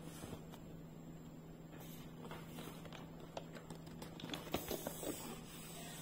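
Hands handling a large cardboard gift box: faint scattered taps and scrapes of fingers on the board, coming more often about four to five seconds in, over a steady low hum.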